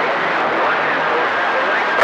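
Steady hiss of a CB radio receiver tuned to channel 28 (27.285 MHz), with a weak, garbled voice faintly heard under the static during skip reception.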